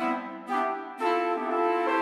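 Sampled orchestral woodwinds, two flutes and two clarinets, playing a melody in four-note closed-voice block chords with an old-timey jazz sound. Short chords sound about every half second, then a longer chord is held from about a second in and moves to a new chord near the end.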